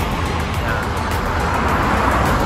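Road traffic: cars passing on a multi-lane road, a steady tyre and engine noise that swells again near the end as a car comes close.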